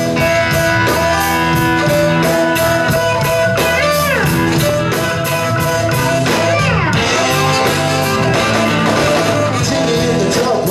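Live blues-rock band playing an instrumental stretch with no vocals: electric guitars, saxophone, bass and drums keeping a steady beat. Two sliding notes come about four and seven seconds in.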